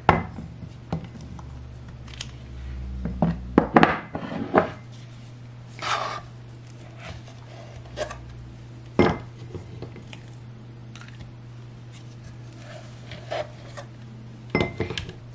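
Metal ice cream scoop scraping mango ice cream from an ice cream maker's bowl and knocking against ceramic serving bowls: scattered clicks and short scrapes, a cluster of them about four seconds in and the sharpest click about nine seconds in.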